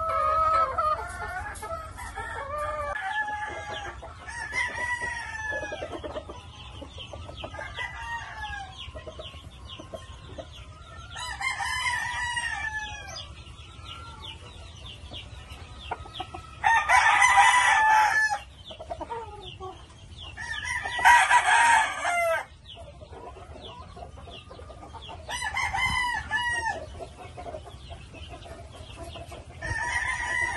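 Gamefowl roosters crowing about four times, the two loudest crows in the second half, with hens clucking between the crows.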